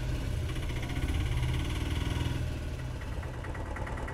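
Auto-rickshaw's small engine running at low speed as the three-wheeler moves slowly forward, a steady pulsing putter that eases a little toward the end.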